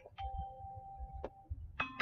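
Faint electronic chime tones: a held tone, then a quick run of short tones changing in pitch near the end, over a low rumble.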